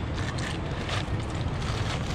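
Steady wind on the microphone over the rush of surf, with a few faint knocks as a heavy rock is rolled over on beach cobbles.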